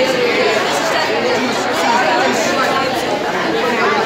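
Crowd of students chattering: many young voices talking over one another, with no single voice standing out.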